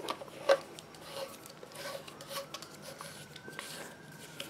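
PVC pipe fittings handled and fitted together: light plastic-on-plastic rubbing and small clicks, with one sharper click about half a second in.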